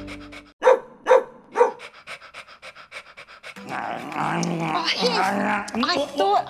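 A dog barking three times, about half a second apart, followed by quick, even panting; a louder wavering pitched sound takes over for the last two seconds.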